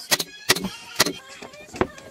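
Pneumatic upholstery staple gun firing staples into a wooden frame: about five sharp shots, two in quick succession at the start, then spaced out.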